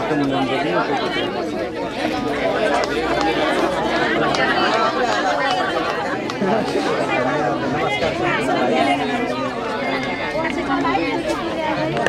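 A crowd of people talking at once: overlapping chatter of many voices, with no music playing.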